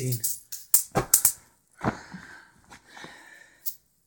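Chainmaille juggling balls clinking as they land in the hands, a few quick metallic clicks close together about a second in, followed by softer breath-like noise and a faint click near the end.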